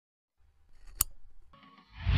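Sound effects from an animated logo intro: a faint low rumble with a single sharp click about a second in, and a whoosh beginning to swell near the end.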